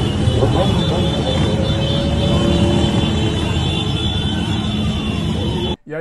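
Motorcycles of a motorcade running along a city street, with people's voices over the engine noise. It cuts off abruptly near the end.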